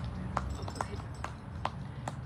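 Light percussive clicks keeping a steady beat, about two and a half a second, over a low steady hum.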